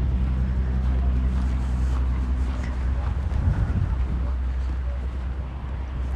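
A steady low mechanical hum that holds at the same pitch throughout.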